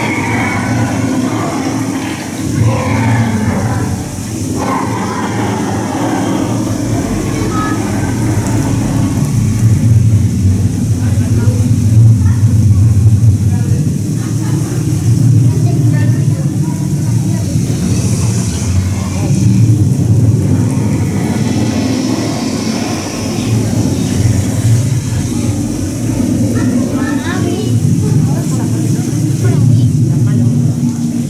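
Animatronic dragon's soundtrack: a deep, continuous growling rumble of breath that swells and fades, loudest about a third of the way in.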